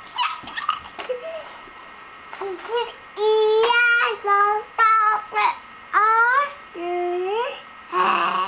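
A Fisher-Price alphabet barn toy sings a short tune through its small speaker from about three seconds in: a few held notes with upward slides between them. There are a few light clicks in the first second.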